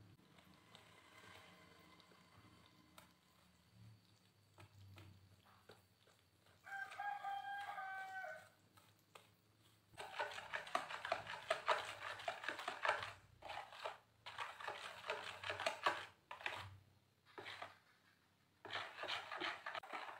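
A wire whisk beats thick pumpkin batter in a bowl until it is smooth and free of lumps. It is faint at first, then makes quick runs of clicking strokes against the bowl from about halfway in, with short pauses. A rooster crows once, about seven seconds in.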